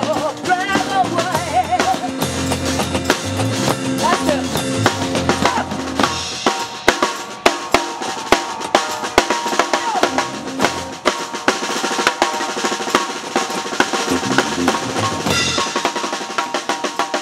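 Live street-band drumming: a drum kit with a percussionist on plastic buckets and small drums. In the first few seconds bass notes and the end of a sung line sound under the drums; from about six seconds in the drums play on their own in fast, busy fills, with the bass notes back briefly near the end.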